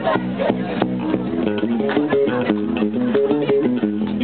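Live rock band playing an instrumental passage: electric guitars and bass guitar with keyboard and drums, a moving riff over a steady beat.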